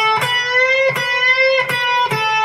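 Electric guitar playing a lead line: a sustained note at the 12th fret of the B string bent up a half step twice, the pitch rising shortly after the start and again past the middle.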